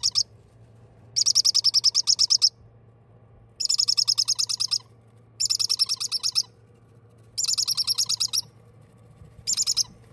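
Parrot chicks chirping in repeated bursts, each about a second long and made of rapid pulses at roughly ten a second, with pauses of about a second between bursts. A faint steady hum runs underneath.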